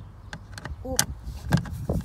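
Screwdriver turning a self-tapping screw in the plastic inner door-handle surround of a Lada Priora door: a few sharp clicks of the bit in the screw head, the strongest about a second in, then two louder low knocks as the trim is handled near the end.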